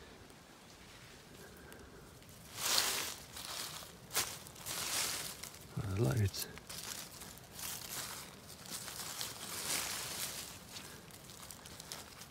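Dry leaf mulch and compost rustling and crackling as hands rummage through a no-dig potato bed to pick out potatoes, in several irregular bursts with short pauses between.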